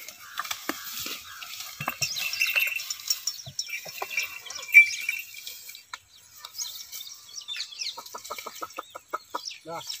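Birds chirping and calling in short, scattered notes, with a quick run of short clucking calls at about seven a second near the end.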